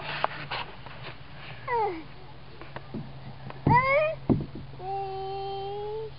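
A toddler's wordless voice sounds: a falling squeal about two seconds in, a rising call near four seconds, and a steady held sung note over the last second, with a couple of sharp knocks in between.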